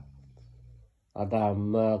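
A man's voice chanting a story in Karen in a steady low pitch, with held, level tones. It trails off, pauses briefly, and comes back in about a second in.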